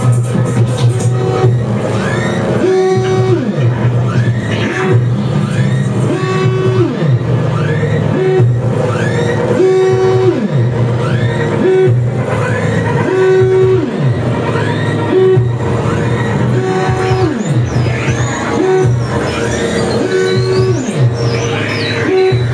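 Live experimental electronic music played from a laptop and synthesizers. Over a steady low drone, a phrase repeats about every three and a half seconds: a held tone that slides down in pitch, with short chirping sweeps above it.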